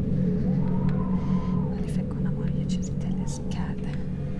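A woman speaking quietly, close to whispering, over a steady low drone.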